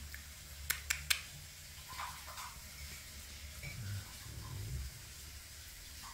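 A kitten nibbling and pawing at a ribbon wand toy: three small sharp clicks about a second in, then soft faint rustling and a faint low rumble.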